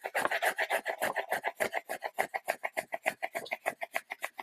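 Rapid back-and-forth scribbling strokes on a hand-held sheet of paper as it is coloured in, a scratchy rasp at about eight or nine strokes a second.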